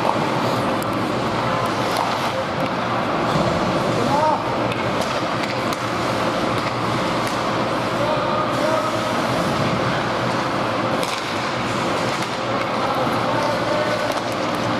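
Ice hockey game sound in an indoor rink: a steady hubbub of indistinct voices from players and spectators, with skates scraping on the ice and a few sharp clacks of sticks and puck.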